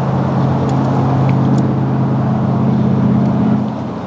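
VEVOR slushy machine running with a steady low motor hum that cuts off just before the end.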